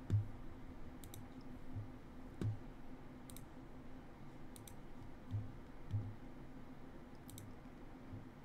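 Scattered clicks from a computer mouse and keyboard at a desk, about eight in all at uneven intervals, some in quick pairs, several with a soft low knock. A faint steady hum runs underneath.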